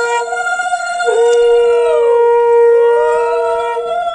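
Conch shells (shankha) blown together. One holds a steady note that breaks off briefly about half a second in and again near the end, while a second slowly wavers up and down in pitch.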